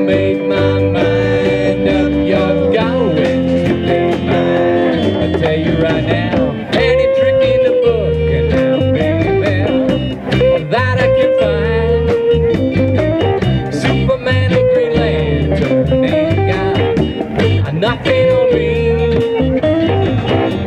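Live rock band playing an instrumental break: a lead electric guitar line with bent, sliding notes over acoustic guitar, bass, drums and keyboard keeping a steady beat.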